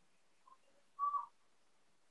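Near silence in a pause between speakers, broken about a second in by one short, faint whistle-like tone.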